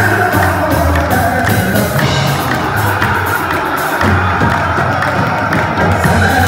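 Live qawwali: a male lead vocalist sings over the group's accompaniment, while the chorus members clap along in time.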